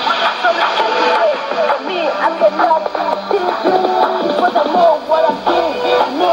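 Radio Miraya's Arabic-language shortwave broadcast on 11560 kHz, received in AM on a Sony ICF-2001D: music with a singing voice.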